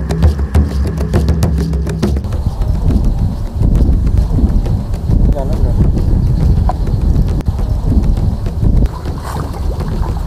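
Background music with percussion for about the first two seconds, then live outdoor audio: a loud low rumble of wind buffeting the microphone, with brief faint voices.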